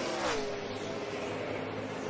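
NASCAR Cup stock cars' V8 engines on track, heard through the TV broadcast: the engine note falls in pitch in the first half second as a car goes by, then settles into a steady drone.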